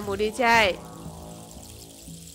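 A voice with strongly gliding pitch calls out for about the first second with no words the recogniser caught, then soft background music carries on.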